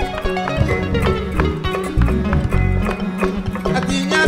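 West African band music from Mali: ngoni and balafon playing a busy pattern of short plucked and struck notes over electric bass and hand percussion.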